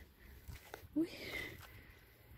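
A woman's short exclamation, "ui", about a second in, over a quiet outdoor background with a couple of faint ticks just before it.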